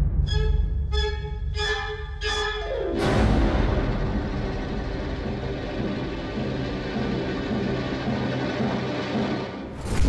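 Orchestral music with timpani. It opens with four short, high chords about two-thirds of a second apart over a low drum rumble. About three seconds in, the full orchestra swells in and plays on.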